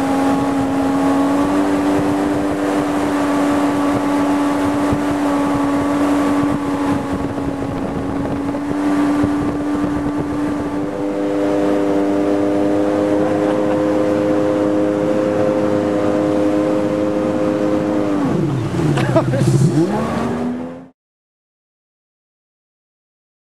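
Jet ski engine running at a steady high pitch while underway. Near the end the throttle is let off: the pitch drops sharply and then climbs back up, and the sound then cuts off abruptly.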